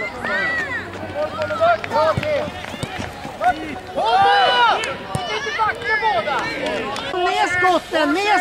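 Many overlapping voices shouting and calling out, several of them high-pitched like children's voices, loudest about halfway through.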